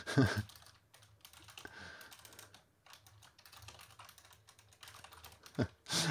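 Typing on a computer keyboard: a run of quick, faint key clicks as a short phrase is typed.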